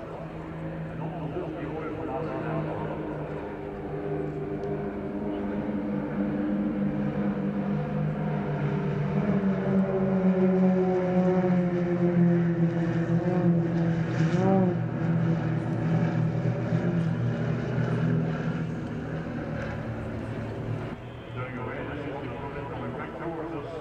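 A formation of four Extra 330LX aerobatic aircraft flying overhead, their piston engines and propellers droning with several overlapping tones. The drone swells through the middle, its pitch drifting slightly as the formation passes, then eases off near the end.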